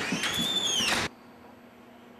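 A door's hinges squealing in a high, rising-and-falling note as the door is pulled open, over a loud background hiss. About a second in, this cuts off suddenly to a quiet room hum.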